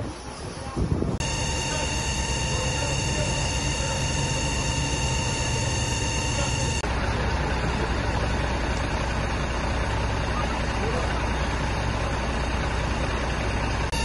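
A fire engine's diesel engine running steadily: a constant drone with a few fixed whining tones over it. The drone changes suddenly about a second in and again about halfway, with a deeper rumble in the second half.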